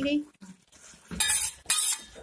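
A utensil clattering against an aluminium cooking pot twice about a second in, as spoonfuls of yogurt are added to the keema.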